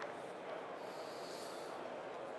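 A pause in speech: steady hall room tone, with a short soft breath picked up by a headset microphone about a second in.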